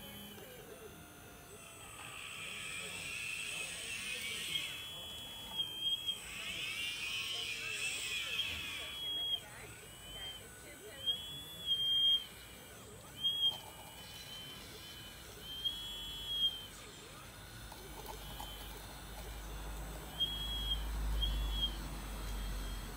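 Electric motors of an RC model Liebherr 960 excavator whining in short bursts as the boom, arm and bucket are worked. Each whine rises to a steady high pitch, holds, and drops away. In the first several seconds the whines overlap thickly, then come in separate spurts, with a low rumble near the end.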